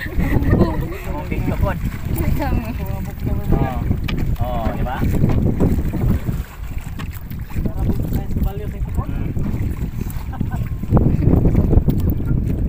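Wind buffeting the microphone in a steady low rumble, with people talking in the background during the first half and again briefly near the end.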